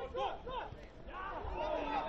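Faint voices of players calling out across a football pitch, over a low rumble of wind on the microphone.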